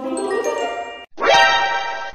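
Two bright chime sound effects, the second starting about a second in, each a cluster of ringing high tones that stops cleanly.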